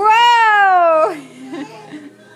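A toddler's loud, high-pitched squeal lasting about a second, rising a little and then sliding down in pitch, followed by a soft low hum.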